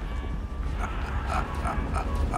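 A man chuckling under his breath in several short, soft bursts over a steady low hum.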